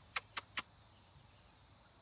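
Four quick, sharp clicks in a row, about five a second, at the very start, then only faint background noise.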